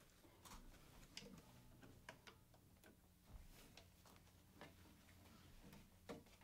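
Near silence: room tone with a low steady hum and scattered faint clicks and taps, from instruments and gear being handled between songs.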